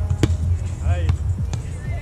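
A volleyball being struck twice, sharp slaps about a second apart, over a steady low rumble of wind on the microphone. A short distant call from a player comes between the hits.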